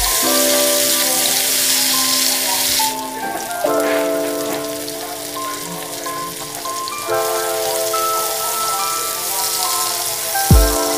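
Hot oil sizzling steadily as chopped garlic, tomato and onion fry in a wok, strongest in the first three seconds, with background music of held, chime-like notes.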